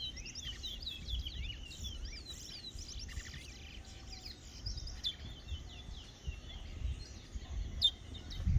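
Caged male towa-towa (chestnut-bellied seed finch) singing fast runs of slurred whistled notes, busiest in the first few seconds and sparser after, over a low rumble of outdoor noise.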